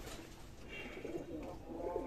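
Domestic pigeons cooing faintly in the background.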